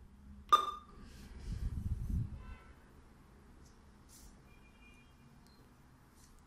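A single sharp click with a brief beep about half a second in from an SS6815F impulse winding surge tester as a test is started from its front-panel keys, followed by a low rumble lasting about a second.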